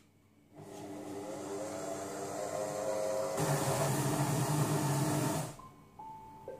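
Silvercrest Monsieur Cuisine Connect kitchen machine running its automatic knead programme on a flour, oil and egg dough: the motor spins up with a rising hum, turns louder and rougher about halfway, then stops shortly before the end.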